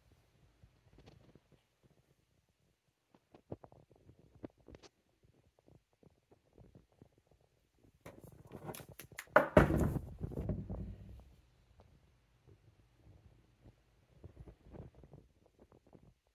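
Handling noise: faint scattered clicks and small knocks of hands moving about a rifle, with a louder stretch of close rubbing, deep rumble and knocks around the middle lasting a few seconds.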